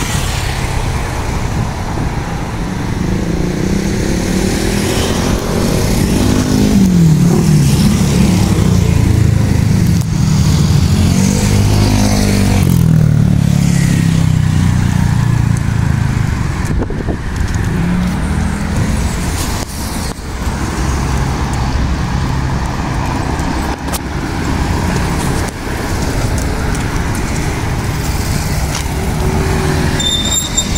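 Road traffic noise: motor vehicle engines and tyres running continuously, with an engine note that rises and falls several times in the first half.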